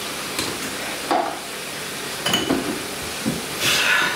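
Food sizzling in a frying pan on the stove, a steady hiss, with a few light knocks of kitchenware and a louder burst of hiss near the end.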